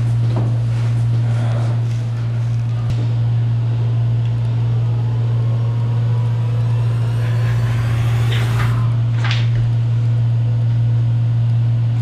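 A steady low hum throughout, with a few faint, brief sounds about eight to nine seconds in.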